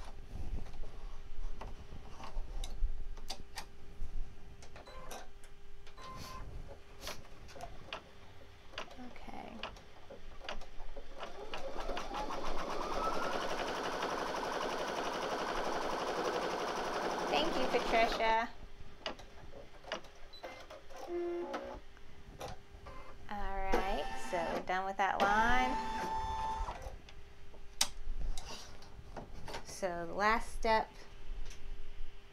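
Brother Innov-is embroidery machine stitching: starting about twelve seconds in, it speeds up quickly, runs at a steady speed for about six seconds, then stops abruptly. Light handling clicks come before it.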